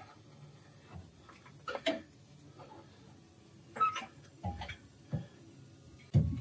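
A few sparse, irregular knocks and clicks as a car's rear differential is eased down out of its mounts on a floor jack, metal parts shifting and bumping as it drops.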